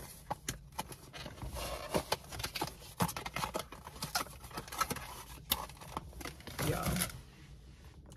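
Cardboard perfume box being opened and handled: irregular small clicks, scrapes and rustles as the flaps and insert are worked and the glass bottle is slid out.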